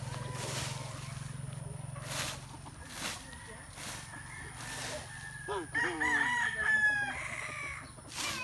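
A young gamecock (stag) crowing: one crow about five and a half seconds in, lasting about a second and a half.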